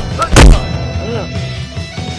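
A heavy, booming punch sound effect: one loud hit about half a second in, over background music with steady held tones.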